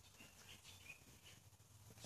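Near silence: faint room tone with a few faint, short, high bird chirps in the first second.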